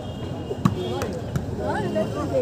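A few sharp slaps of a volleyball being struck by hand during a rally, the loudest a little over half a second in, with crowd chatter and a shout around it.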